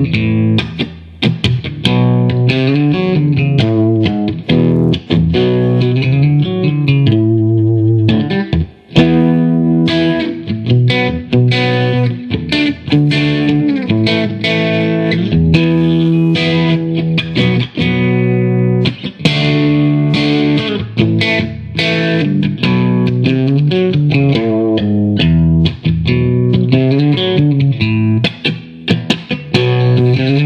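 1968 Fender Pink Paisley Telecaster played through an amplifier: a continuous run of quick single-note lines and chords, with a brief break about nine seconds in.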